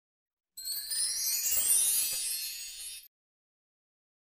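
A short logo intro sound effect: several high, chime-like tones sweeping upward together in a shimmering rise, starting about half a second in and cutting off suddenly after about two and a half seconds.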